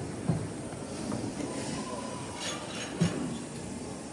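Steady background noise of a large indoor hall, with two dull thumps, one just after the start and one about three seconds in.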